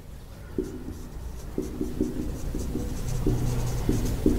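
Marker pen writing on a whiteboard: a run of short strokes, each with a faint pitched squeak, as words are written.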